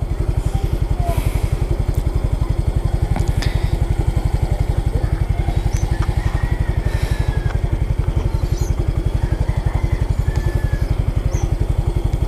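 Small motorcycle engine idling at a standstill, with an even, rapid low putter.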